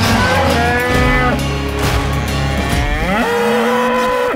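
Cattle mooing over background music with a beat. Near the end there is one long moo that rises in pitch and then holds.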